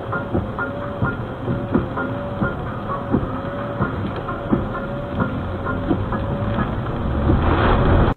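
A car's windscreen wipers sweeping rain off the glass, a short squeaking note and a click on each stroke, about three strokes every two seconds. Underneath is a steady rushing noise that swells near the end.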